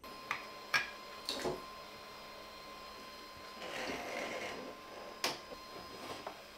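Quiet handling sounds of plastic and cardboard: a few light clicks and taps early on, a soft scraping rustle a little past the middle, and a sharper tap about five seconds in, as a small plastic holder is set on a 3D printer bed and a cardboard box is lowered over the printer. A faint steady thin tone runs underneath.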